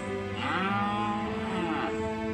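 A long, drawn-out pitched call lasting about a second and a half, starting about half a second in, over soft, slow background music.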